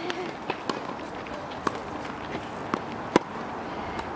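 Scattered sharp knocks of tennis balls being struck and bounced on an outdoor hard court, at irregular intervals, with the loudest about three seconds in, over a faint murmur of voices.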